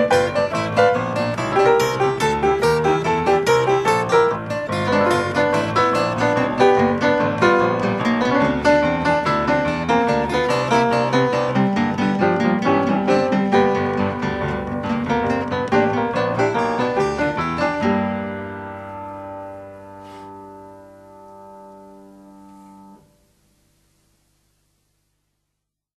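Piano music playing the closing bars of a song, with no singing. About 18 seconds in it settles on a final held chord that rings and fades, then cuts off about five seconds later.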